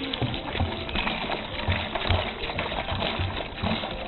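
Water pouring steadily from a plastic jerrycan into a plastic bucket of chopped leaves.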